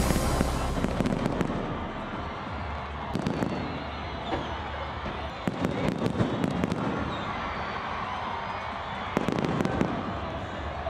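Fireworks going off: a dense crackle of many small pops with scattered sharper reports, several clustered around three seconds in, six seconds in and near the end. Music fades out during the first second or two.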